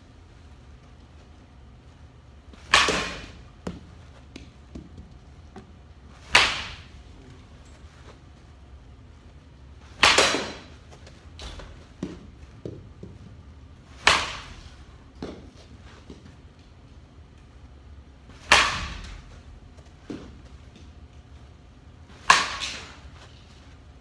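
Baseball bat hitting front-tossed balls: six sharp cracks about every four seconds, each trailing off briefly, with fainter knocks in between.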